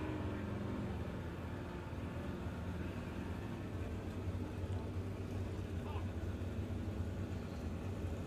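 Jet sprint boat engine running steadily at a distance, a fairly quiet low drone, while the boat waits before its run.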